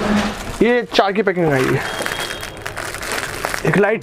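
A man talks for the first couple of seconds, then clear plastic garment packets rustle and crinkle as they are handled.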